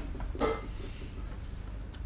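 Tea-set items handled in a metal tin, with one short clink about half a second in, over a low steady hum.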